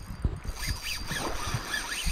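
Spinning reel's drag buzzing as a big hooked fish pulls line off, over a low rumble of wind and handling on the microphone.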